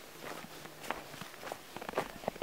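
Footsteps on snow: a few uneven, soft steps.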